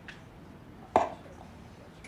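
A single sharp knock with a short ring about a second in, from a tall wooden atabaque drum being carried and handled.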